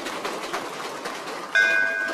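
Applause: a room of people clapping densely, joined about halfway by a steady pitched tone that lasts about a second.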